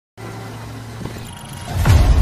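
Trailer sound design: a steady low hum, then a swelling whoosh that sweeps down into a deep rumble near the end.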